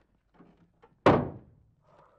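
An interior door slammed shut: one sharp, loud thud about a second in that dies away quickly, with a few faint small knocks and a click just before it.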